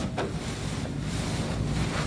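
Steady, even rumbling noise of the kind wind on a microphone makes, with one brief faint knock near the start.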